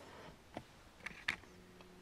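Quiet room with a few faint clicks and knocks: handling noise from the handheld camera as it is swung round to face the other side of the room.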